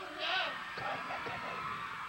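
Voices calling out over a faint tape hiss, with no music: a long, wavering whoop just after the start, then a few short shouts.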